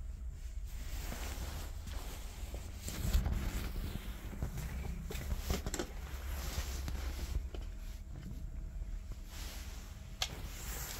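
Footsteps and rustling handling noise on a hard floor, with scattered clicks and a louder knock about three seconds in.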